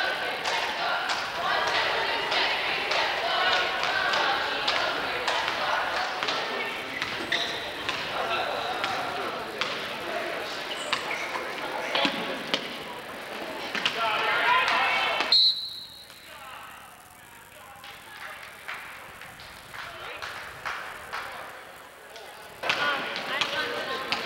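Basketball dribbling and bouncing on a hardwood gym floor amid crowd chatter. About fifteen seconds in a brief high tone sounds and the sound drops suddenly to a quieter stretch with scattered knocks, then picks up again near the end.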